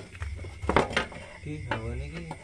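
A few sharp metallic clinks and knocks, the loudest just under a second in, as the cast-metal CVT cover of a Yamaha NMAX scooter is worked loose and lifted off the engine case.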